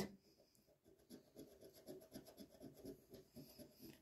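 A coin scratching the coating off a scratch-off lottery ticket, faint quick strokes about three or four a second, starting about a second in.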